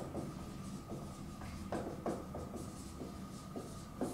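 Dry-erase marker writing on a whiteboard: a run of short, irregular strokes as the letters are drawn.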